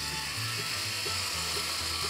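Four-head rotary electric shaver running with a steady high buzz as it cuts through a full beard, over background music.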